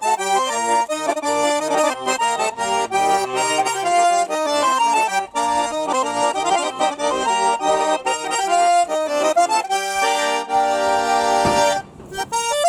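Nizhny Novgorod garmon, a Russian button accordion, playing a lively folk-tune medley in quick runs of notes, then settling into a held chord near the end.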